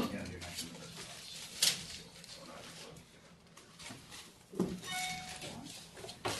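Faint, indistinct conversation in a small room, broken by a few sharp knocks and clicks, with a brief ringing tone about five seconds in.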